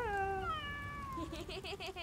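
Cartoon cat meowing: one long meow that rises sharply and then slides slowly down, followed by a wavering, warbling meow.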